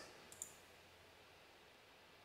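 Near silence: room tone, with two faint quick computer-mouse clicks about half a second in.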